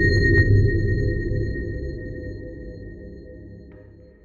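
Electronic audio logo sting for the XM brand: a held, ping-like high tone over a deep low rumble, fading away steadily, with a few light ticks along the way.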